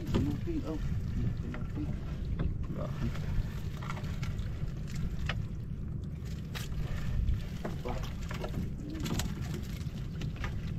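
A nylon gill net being hauled by hand over the side of a small outrigger boat: scattered short clicks, rustles and knocks of mesh, floats and hands against the hull, over a steady low rumble.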